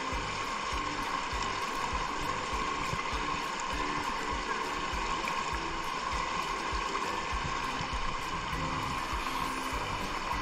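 Shallow rocky stream flowing with a steady rushing sound, under soft instrumental background music.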